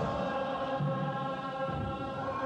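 Ethiopian Orthodox Christian church chant: voices holding long, steady notes together.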